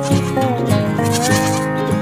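A sheep bleating over background music with a steady beat.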